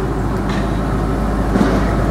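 Steady low rumble of an idling car engine under general outdoor background noise.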